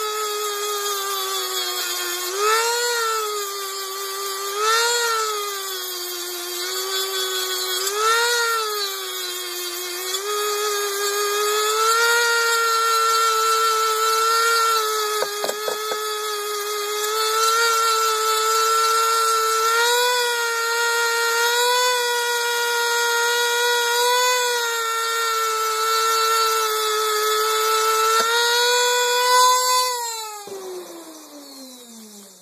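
Handheld rotary tool with a small sanding bit running at speed and grinding down the part of the airsoft gun's lower receiver where the rail mounts. It gives a steady high whine that sags and recovers in pitch as the bit is pressed into the work.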